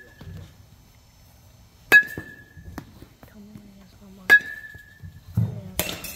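A youth metal baseball bat hits two tossed baseballs, about two seconds and a little past four seconds in. Each contact is a sharp ping with a short ringing tone.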